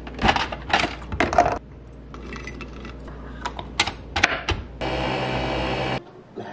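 Nespresso capsule coffee machine being handled: a run of plastic clicks and clatter as the lid and capsule are worked, then sparser clicks. Near the end the machine starts with a steady motor hum that cuts off suddenly.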